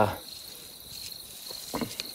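Crickets calling in a steady, high, finely pulsed trill.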